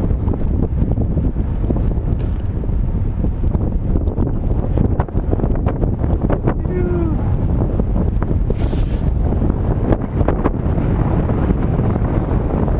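Wind buffeting the microphone of a camera riding on a moving bicycle, a steady rumble with scattered clicks. A brief pitched sound comes about seven seconds in, and a short high hiss follows about two seconds later.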